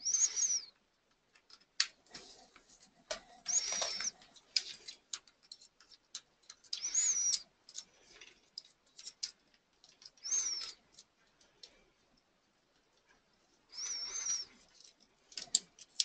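Nasal breaths about every three and a half seconds, five in all, each with a faint high whistle. Between them come small clicks and taps of a USB cable being handled and plugged into a Nook Simple Touch e-reader.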